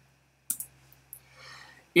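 Computer keyboard keys clicking a few times as a short message is typed, the sharpest click about half a second in.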